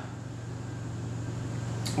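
Room tone in a gym: a steady low hum with a faint hiss from the ventilation, and one short click just before the end.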